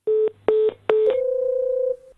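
Telephone line tones after the other party hangs up: three short beeps, then a steady tone from about a second in.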